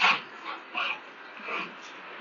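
Two shepherd dogs play-fighting, vocalising as they grapple: one loud, short call right at the start, then three shorter, fainter ones over the next second and a half.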